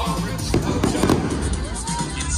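Aerial fireworks going off with several sharp bangs, the strongest about half a second and one second in, over loud amplified music with a steady beat and singing.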